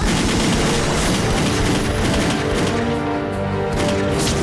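A rapid, sustained volley of rifle gunfire hitting a man, mixed with a loud background music score with held notes.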